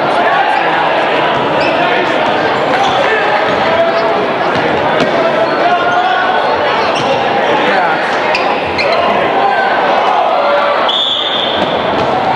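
Indoor basketball game sounds: a ball bouncing on the hardwood amid the crowd's steady chatter and shouts. Near the end a referee's whistle blows once for about a second, stopping play.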